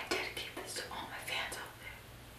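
A young woman whispering behind her cupped hand for about two seconds, breathy and unvoiced.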